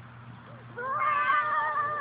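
A young child's drawn-out, high-pitched squeal, starting about three-quarters of a second in and held with a slight waver.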